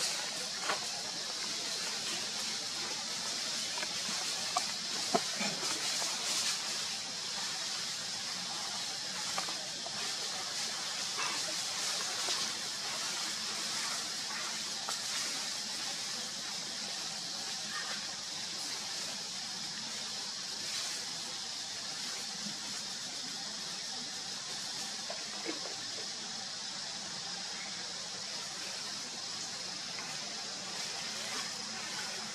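Steady high-pitched hiss of outdoor ambience, with a few faint clicks in the first several seconds.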